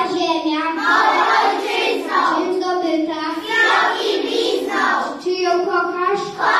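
A group of preschool children singing together in chorus, in phrases about a second long.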